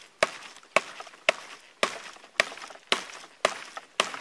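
Schrade SCAXE4 tactical tomahawk chopping into a dead conifer branch: about seven sharp strikes, roughly two a second, in an even rhythm. The thin tomahawk blade is not biting in as deeply as a camp axe would.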